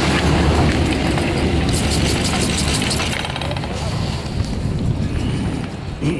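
Chairlift terminal machinery running with a heavy low rumble that fades after the first few seconds as the chair moves away from the terminal. A quick rattling clatter comes about two seconds in.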